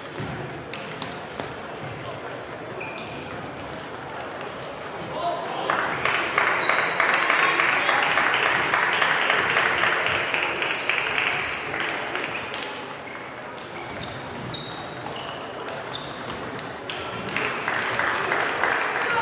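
Table tennis balls clicking off bats and tables at many tables in play, over a murmur of voices in a large hall. A burst of applause rises about six seconds in and dies away by about twelve seconds, and another starts near the end.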